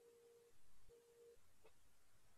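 Near silence with a faint steady tone that cuts off about half a second in and comes back briefly about a second in.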